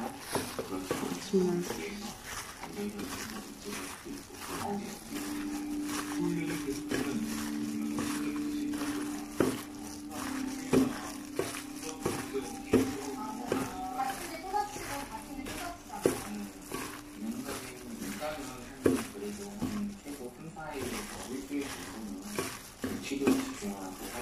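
Acorn-jelly salad being tossed by a gloved hand in a stainless steel bowl: a string of light clicks and knocks against the bowl, over a faint murmur of voices and a steady low hum through the middle.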